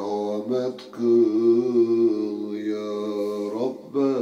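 Solo voice chanting a Turkish ilahi (devotional hymn), drawing out long melismatic held notes with a wavering pitch. There is a brief break about a second in, and the long note ends just before the next phrase begins.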